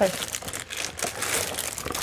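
Thin clear plastic bag wrapped around a boxed figurine crinkling irregularly as it is handled and moved.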